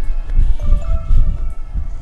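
Wind buffeting the microphone in an uneven low rumble, under soft background music.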